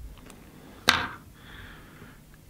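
A single sharp click from a small tool being handled at a fly-tying vise, about a second in, with a short ringing tail.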